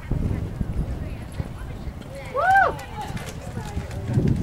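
Hooves of a cantering horse thudding on sand footing, a run of dull low beats. A little past halfway a short, high voice call rises and falls over it.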